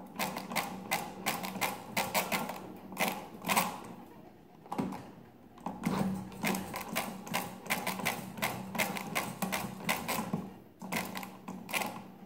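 Rapid pinwheel calculator's hand crank being turned through repeated cycles, its pinwheels and ratchet clicking in quick runs of several ticks a second. There are short pauses about four and a half seconds in and again near the end.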